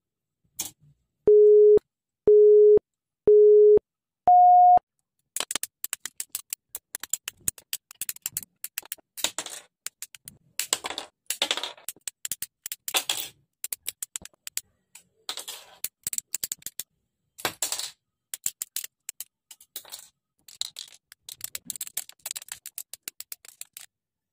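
Four electronic beeps, three at one pitch and then a higher fourth, like a countdown. Then a long run of sharp, irregular clicks and snips: hobby nippers cutting plastic model-kit parts off the runner.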